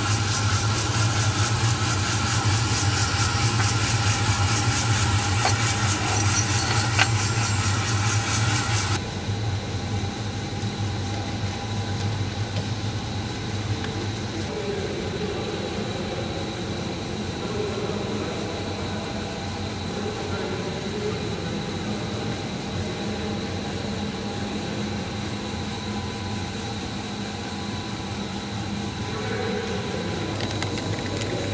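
Electric drum coffee roaster running as green beans are loaded: steady fan noise over a strong low hum. About nine seconds in the sound drops abruptly to a quieter steady machine hum, with faint voices in the background.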